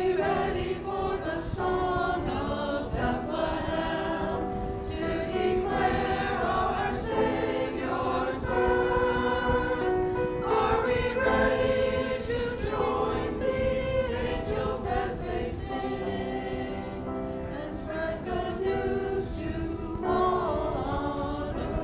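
Church choir singing together, several voice parts held at once in long sung notes.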